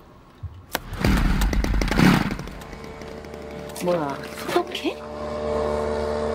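Film soundtrack: a sharp click, then a loud rushing noise with deep rumble for about a second and a half. About five seconds in, a steady mechanical drone with a fixed pitch starts: the engine of a street fumigation fogging machine.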